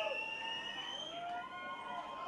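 Soft electric guitar notes that swoop up and down in pitch, several overlapping, played quietly between songs.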